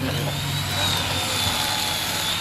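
Electric fillet knife running steadily while cutting fish, a motor hum with a thin high whine that wavers slightly as the blade meets the flesh.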